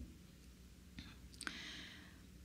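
Quiet room tone with two faint clicks about a second in, then a soft hiss near the end.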